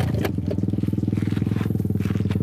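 An engine idling steadily with an even pulse, and one sharp click about a quarter second in.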